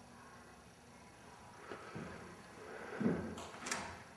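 A few faint knocks and scrapes on wood, such as footsteps and shifting weight on bare floorboards, with the loudest knocks about three seconds in.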